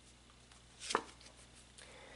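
A single short, sharp snap of a tarot card about a second in, as the card is drawn from the deck, over faint room tone.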